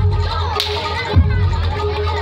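A single sharp crack of a long hand whip about half a second in, over loud live music with a deep drum beat about every second and a bit.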